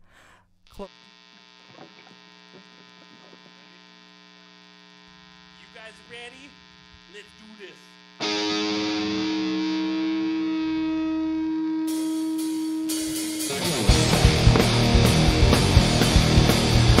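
Amplifier hum, then about eight seconds in a distorted electric guitar rings out one held note, loud and steady. Near the end the pop-punk band comes in with drums and distorted guitars.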